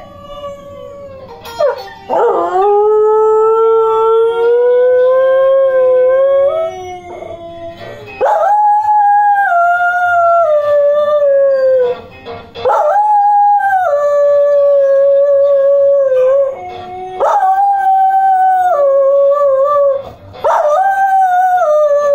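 Pet dog howling along with blues guitar music from a TV: five long, loud howls of a few seconds each, wavering and stepping up and down in pitch.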